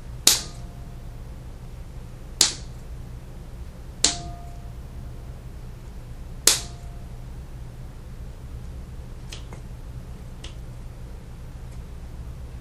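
Scissors snipping through autumn olive stems: four sharp snips a couple of seconds apart, each with a brief metallic ring, then three fainter clicks near the end.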